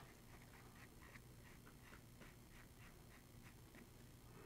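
Near silence, with faint light ticks of a charcoal pencil making small strokes on sketch paper, about four a second.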